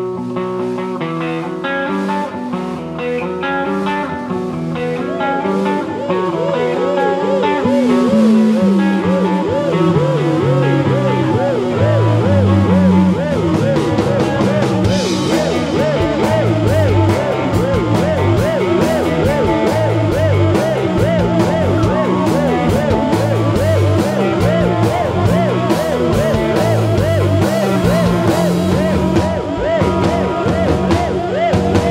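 A live rock band plays an instrumental passage on electric guitars, bass guitar and drums. It opens on a guitar figure, then the full band comes in louder, with a bass line walking downward about eight seconds in.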